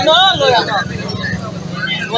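A man speaks a few words at the start, over a steady low rumble of outdoor background noise.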